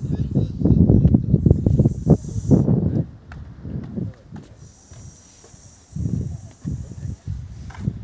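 Wind buffeting the phone's microphone in gusts: a heavy rumble through the first three seconds, then weaker gusts with a faint hiss.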